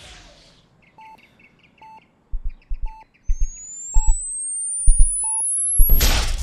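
Electronic sound effects: five short beeps about a second apart over faint chirps, low thumps from about two seconds in, and a thin high whistle that rises steadily in pitch and loudness from about halfway, ending in a whoosh.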